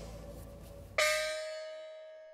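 Background music fades out, then about a second in a single bell-like chime sound effect strikes and rings on, slowly dying away.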